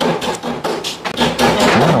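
Close-up eating sounds at a table: a rapid run of sharp clicks and taps, from cutlery and crunching.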